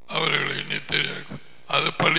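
Speech only: a man talking, with a short pause in the middle.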